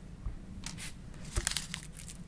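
Crinkling and clicking of clear plastic packaging and syringe parts being handled, as a sterile needle pack is picked up to be opened. A few short crackles come mostly in the second half.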